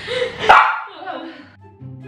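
A young woman laughing hard, with one loud shriek of laughter about half a second in. About a second and a half in, it cuts to background music with a low bass line.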